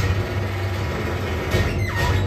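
Synthesizer in a live synth-punk set playing a dense, droning low rumble with no vocals, and a falling pitch sweep near the end.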